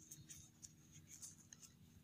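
Faint rustling and small ticks of fresh coconut leaf strips being bent and handled by fingers.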